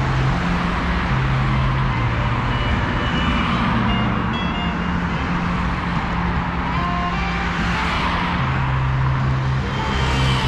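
Road traffic at a city street crossing: motor vehicles pass close by over a steady low engine hum, and one passing car swells loudest about eight seconds in.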